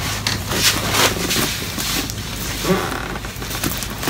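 Plastic protective wrapping crinkling and rustling as a bag is handled and lifted by its wrapped strap: a run of small crackles and scrapes.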